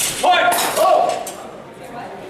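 Steel rapier blades clashing in a fencing exchange: sharp metallic strikes at the start and about half a second in, with a lighter one near a second and a half. A person's voice calls out over the clashes.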